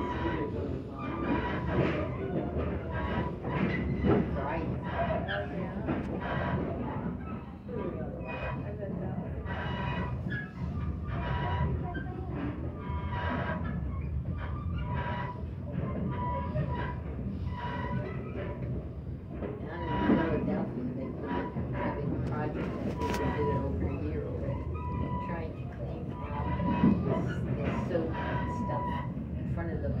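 Passenger coach of an excursion train in motion, heard from aboard: a steady rumble of wheels on the rails with frequent clicks and knocks.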